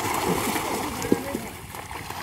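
Fish thrashing and splashing in the water trapped inside a seine net as it is drawn closed, steady churning with a sharper splash about a second in. Voices are heard under it.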